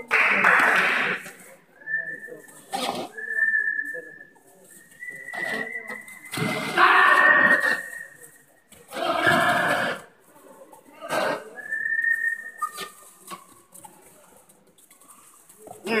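Loud bursts of shouting from players and spectators during a kabaddi raid, about a second each. Between them come several short, steady, high whistle tones.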